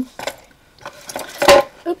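A small hard object knocked or dropped onto the craft desk with one sharp clatter about one and a half seconds in, after some light handling clicks of packaging and supplies.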